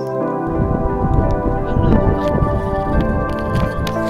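Background music with sustained, steady tones. From about half a second in, a low rumbling noise runs under it.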